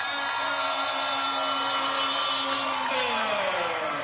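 A voice holds a long drawn-out shout of "touchdown" on one pitch, then trails down in pitch near the end, over crowd noise at a youth football game.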